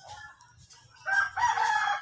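A rooster crowing: one long multi-part crow that starts about a second in and is still going at the end.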